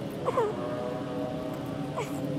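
Small Suzuki 2.5 hp four-stroke outboard running steadily at idle. A short call that glides up and down in pitch stands out about a quarter second in, with a fainter one near the end.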